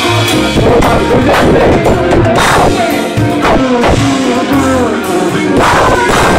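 Live soul band playing loud: a drum kit beat with bass drum and cymbals, a bass line, and a singer's voice over it.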